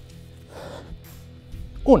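Background music, with a short, sharp breath about half a second in as a man hikes a kettlebell and drives it up in a two-handed power swing.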